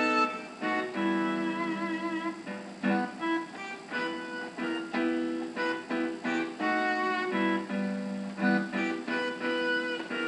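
Piano played solo: a melody over chords, one note struck after another with the chords ringing on. It comes through a webcam microphone, thin and with almost no bass.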